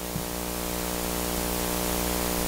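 Steady hiss with a low electrical hum underneath, growing slightly louder: the background noise of the microphone and recording chain.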